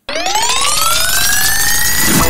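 Cartoon sound effect: one loud, siren-like tone that starts suddenly and climbs in pitch for about two seconds, levelling off near the end.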